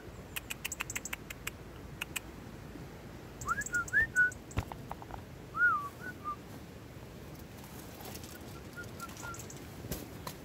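A person whistling short rising and rise-and-fall notes to call a robin, with faint short notes near the end. A quick run of sharp clicks comes in the first couple of seconds, and a single knock about halfway through.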